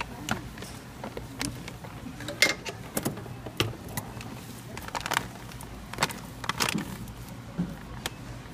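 Clear plastic packet crackling in irregular sharp crinkles as it is handled and pulled open by hand, over a steady low hum.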